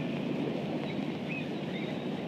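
Steady background hiss of an old film soundtrack with outdoor ambience, and a faint short bird chirp a little after a second in.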